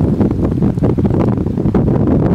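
Wind blowing on the microphone, a loud, steady noise heaviest in the low range.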